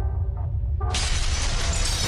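Sound effect from a logo intro: a low rumble, then about a second in a sudden shattering crash that keeps going as the wall breaks apart.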